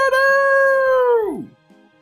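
A 'cock-a-doodle-doo' rooster crow. The last note is held high and steady for about a second, then drops sharply in pitch and stops.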